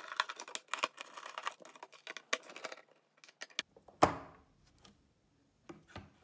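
Precision screwdriver backing screws out of a graphics card's metal back cover: a dense run of small metallic clicks and scrapes for about three seconds, then scattered clicks. One loud sharp knock about four seconds in, and a few handling clicks near the end.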